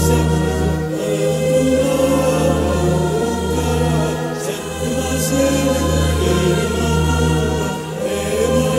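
Music: a choir singing a folk song, set with electronic ambient production over steady, sustained low bass tones.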